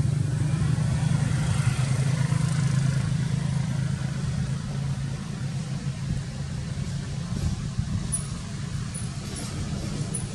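A motor vehicle engine running with a steady low hum, easing off about halfway through.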